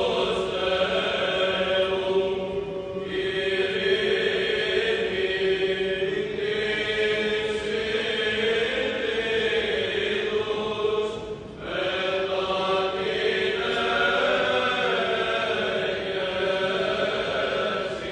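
Male Greek Orthodox choir singing Byzantine chant: the melody moves above a steady held drone note. There is a short break about two-thirds of the way through before the singing resumes.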